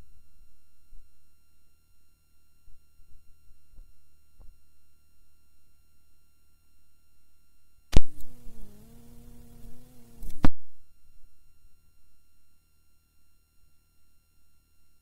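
Old cassette recording's background hum and hiss with a faint steady high whine. About eight seconds in, a sharp click opens a two-and-a-half-second burst of louder hiss with a wavering pitched hum, and a second click cuts it off.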